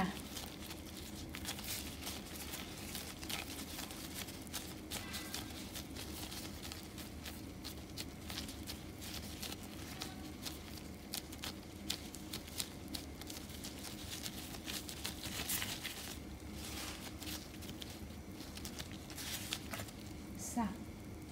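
Quiet handling of sticky glutinous-rice dough as it is pressed around a filling and rolled into balls: soft, irregular little clicks and rustles over a low steady hum.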